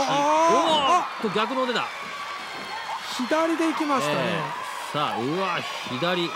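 Women yelling and screaming in short, high, rising and falling cries as one wrestler punches her mounted opponent in the face.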